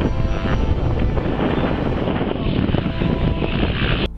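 Wind buffeting the camera microphone: a loud, rough, gusting rumble.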